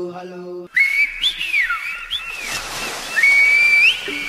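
Human whistling: several short notes that glide up and down, then a long held high note near the end. Before it, a sustained chanting voice cuts off under a second in.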